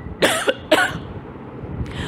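A man coughing twice into his fist, two short sharp coughs about half a second apart in the first second, close to a microphone.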